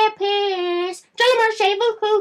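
A young man's high-pitched voice holds one sung note for just under a second, then breaks into quick, speech-like syllables.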